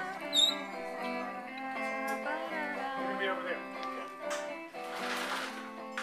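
Electric guitar played through an amplifier, its chords ringing and held, with people's voices over it. A short rush of noise comes about five seconds in.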